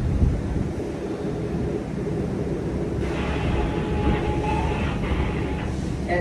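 Steady low rumble of background noise, with fainter higher sounds in the second half.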